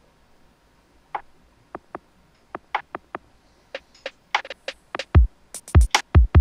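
Trap-style electronic drum beat playing back from a production session. It starts filtered down, as sparse, thin clicky hits. About five seconds in, deep kicks with a falling low boom and crisp high hats come in.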